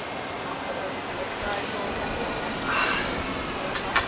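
Outdoor street ambience: a steady hum of city traffic with faint voices of people nearby, rising briefly for a moment about three seconds in.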